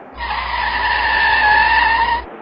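A car's tyres squealing as it brakes to a stop: a loud, two-second screech whose pitch sags slightly, over a low engine rumble.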